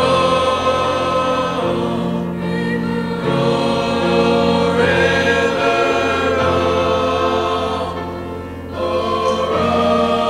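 Mixed choir of young voices singing in parts, holding long sustained chords. The phrases swell and ease with short breaks between them, and grow quieter briefly before swelling again near the end.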